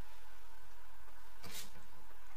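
Steady low background hum with one short breathy noise a little past halfway through, from a blindfolded person with their face down at a plate, biting at a hot dog without hands.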